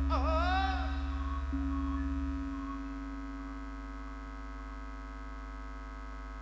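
Live campursari band music in a lull between sung lines: a short sliding melodic phrase ends about a second in, then held keyboard notes ring on while the bass fades away by about two and a half seconds, leaving a quiet steady sustained chord.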